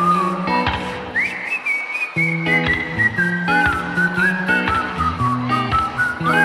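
Live band playing an instrumental passage: chords and drums under a thin, high melody line that leaps up about a second in and then steps slowly downward. The low instruments drop out briefly near the start.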